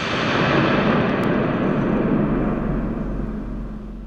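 A loud rush of noise that starts abruptly, holds steady for about three seconds, then dies away.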